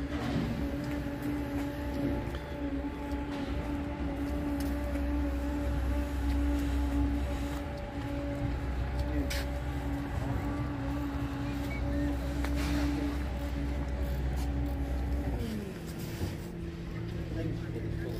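A machine running steadily at one pitch over a deep rumble; about fifteen seconds in its pitch slides down and the rumble stops, leaving a lower steady hum.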